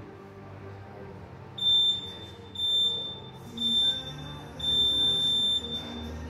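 Gym interval timer beeping a start countdown: three short high beeps about a second apart, then one longer beep as the clock starts the workout.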